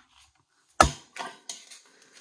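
A handheld plastic envelope punch snapping down once through black cardstock with a sharp clack just under a second in, cutting a notch, then a few lighter clicks as the punch and paper are handled.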